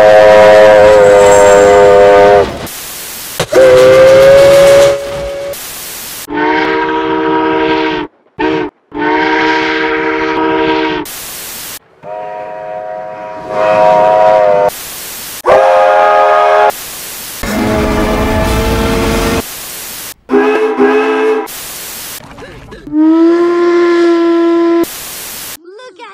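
Steam locomotive whistle of Virginia & Truckee No. 29 blown over and over: about a dozen held blasts of different lengths, each sounding a chord of several notes, some at a higher or lower pitch than others. Short bursts of noise cut between the blasts.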